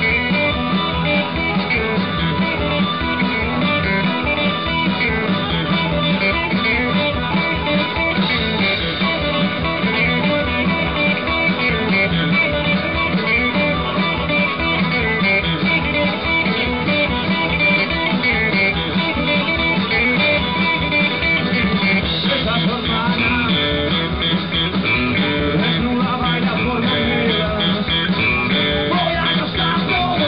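Live rock band playing: electric and acoustic guitars over a drum kit, with a steady beat and no breaks.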